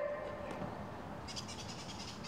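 Faint outdoor ambience. Birds start chirping high and rapidly about a second in, just after the tail of a music track fades out.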